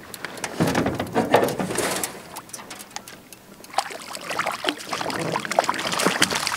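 Hooked rainbow trout splashing and thrashing at the surface beside the boat, in irregular bursts: a loud run of splashes about a second in, a short lull, then more splashing near the end.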